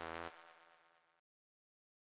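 The end of the electronic outro music: one held note that cuts off sharply about a third of a second in, leaving a faint tail that fades within the next second.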